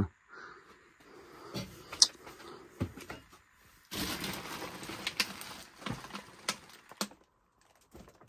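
Rustling and scattered clicks and knocks of household junk and plastic bags being brushed past and moved, with a sharp click about two seconds in and a longer spell of rustling from about four to seven seconds in.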